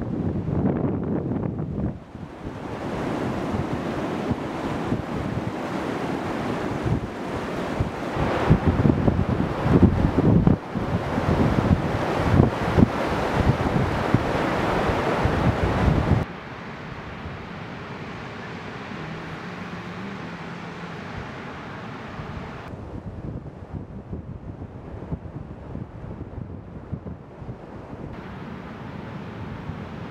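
Sea surf washing on a sandy beach, with strong wind buffeting the microphone in gusts. About sixteen seconds in it drops suddenly to a quieter, steadier wash of surf.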